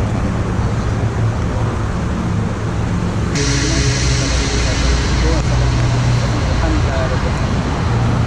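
A man reciting a Muslim prayer (doa) in a low voice, largely covered by a steady low rumble. About three seconds in, a steady hiss joins suddenly.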